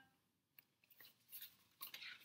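Near silence with a few faint, short rustles and clicks of a paperback picture book being handled and closed.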